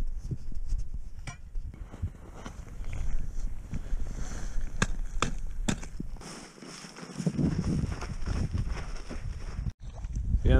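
Small hand axe striking the ice around a tip-up frozen into its hole, a few sharp chops near the middle, amid crunching footsteps in snow and low wind rumble.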